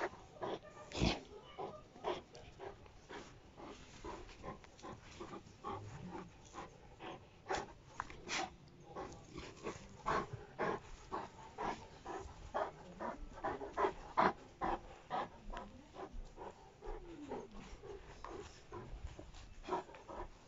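A Landseer dog breathing hard as it tugs on a rope toy, amid many irregular short scrapes and knocks.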